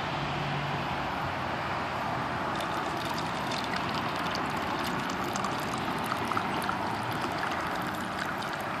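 Clear liquid poured from a plastic bottle into a plastic cup, trickling with many small splashes from a few seconds in, over steady background noise.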